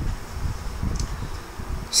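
Low, uneven rumble of background noise on the microphone, with one faint click about a second in.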